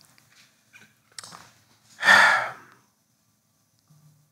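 A man's single short, breathy exhale with a little voice in it, about two seconds in; it is the loudest sound, and a few faint small sounds come before it.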